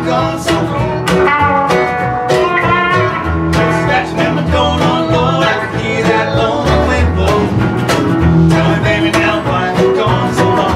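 Live band playing: electric guitar over upright bass and acoustic guitar, plucked notes running continuously over a steady bass line.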